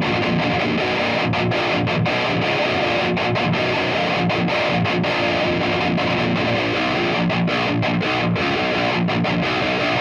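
Eight-string electric guitar played through an Axe-FX III modelling the lead channel of a Soldano SLO-100, with no pedals in front, into a power amp and guitar cabinet: heavily distorted high-gain metal riffing that plays without a break.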